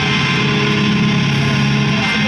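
Brutal death metal band playing live: distorted electric guitars and bass with drums, loud and dense, held low notes in the guitars, no vocals.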